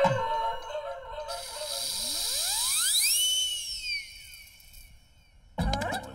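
Soundtrack sound effect: a whistling whoosh over a hiss that sweeps up in pitch for about two seconds, peaks, then falls and fades away. A short musical jingle dies out at the start, and a low thump comes near the end.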